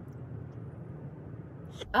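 Steady low hum inside a parked car's cabin, with no distinct events, until a voice starts near the end.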